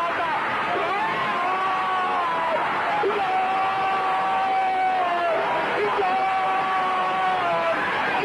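A football commentator's goal call: a shouted, drawn-out "Gooool!" held in three long breaths of about two seconds each, each note sagging in pitch as the breath runs out, with stadium crowd noise behind.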